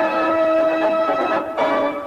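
Effect-distorted logo jingle audio: held, bell-like electronic tones, warped by audio effects, that break off briefly about one and a half seconds in and then come back.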